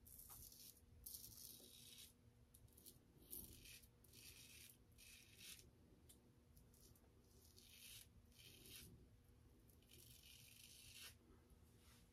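Faint scraping of a long-handled double-edge safety razor cutting stubble through shaving lather, in a series of short strokes with uneven pauses between them.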